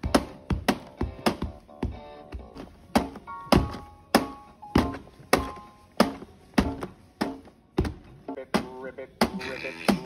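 A child's hands tapping the plastic pads of a light-up electronic toy drum, about two taps a second in an uneven rhythm. Each hit sets off short electronic tones and snatches of melody from the toy.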